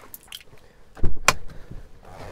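Pickup truck driver's door being unlatched and pushed open from inside: a sudden clunk about a second in, followed by a sharp click.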